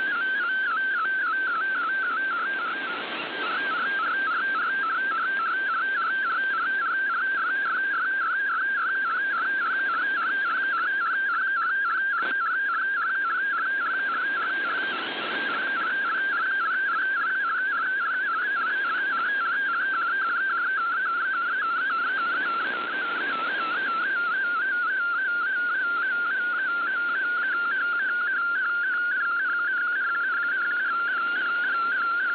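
MFSK digital picture transmission received over shortwave: a single tone near 1.5 kHz warbling rapidly up and down as it carries the image's pixels, over steady radio static. The signal fades briefly about 3, 15 and 23 seconds in.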